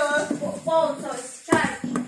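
A young child's high voice calling out in drawn-out, sing-song syllables with no clear words, followed by a short knock about a second and a half in.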